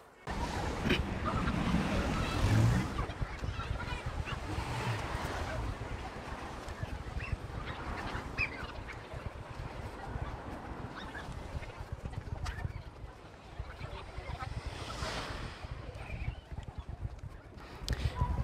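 Outdoor ambience beside a seafront road: traffic going by with a steady low rumble, and scattered faint sounds that may be people's voices or bird calls in the distance.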